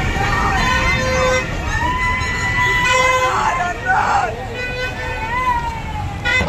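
A reed wind instrument plays long held notes that bend and slide in pitch. Under it run a steady low engine rumble from a tractor and crowd chatter.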